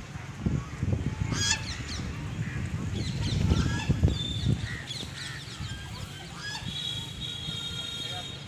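Goose honking repeatedly in short calls, over a low wind rumble on the microphone.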